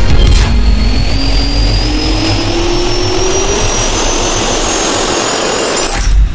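Jet engine spooling up: a rising whine over a steady rush of air, climbing slowly in pitch throughout.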